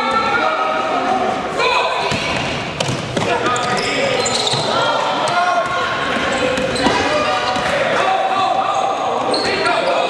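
A basketball being dribbled on a sports-hall floor during live play, with players' voices calling out over it, all echoing in a large gym.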